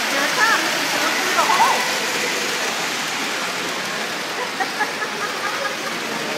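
Lionel O gauge train running on three-rail tinplate track, a steady rolling noise of wheels and motor as the cars pass close by. Faint voices come and go in the background.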